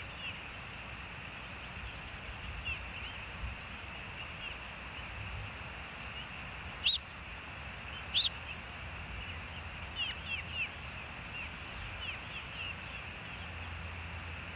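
Birds calling outdoors: short high chirps scattered throughout, with two louder, sharper calls about halfway through, over a steady background hiss.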